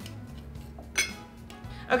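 A single sharp metallic clink about a second in, as a metal can or utensil is set down on the counter, over faint background music.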